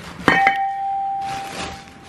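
A cast-iron brake rotor knocks once, about a quarter second in, and rings with a single clear tone that slowly fades over about two seconds, with plastic bag crinkling around it.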